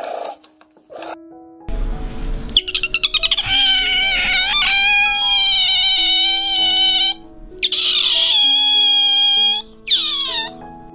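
Background music with steady held notes, over which an animal gives two long, high-pitched, wavering cries, then a short cry that falls in pitch at the end.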